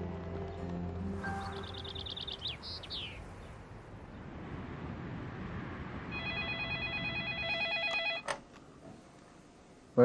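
Background music fading out with a few high bird chirps, then a telephone ringing with a rapid trilling ring for about two seconds. The ring is cut short by a click as the handset is picked up.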